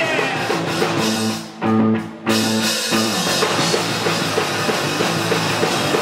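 Live rock band playing electric guitar, bass guitar and drum kit. The music stops short twice, about a second and a half and two seconds in, with one loud chord hit between, then carries on at full level.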